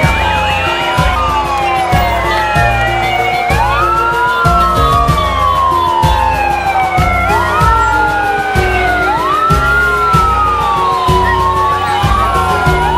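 Several police sirens wailing, their pitch rising quickly and falling slowly about every two seconds, over music with a heavy steady beat.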